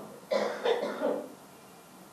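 A man clearing his throat into a handheld microphone: two short rasps in the first second or so, followed by faint room tone.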